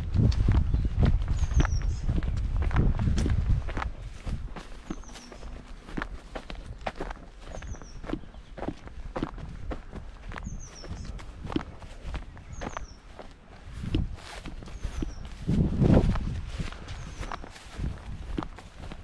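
Footsteps walking over grass at a steady pace, about two steps a second. A bird gives a short high call every second or two. A loud low rumble fills the first few seconds and comes back briefly near the end.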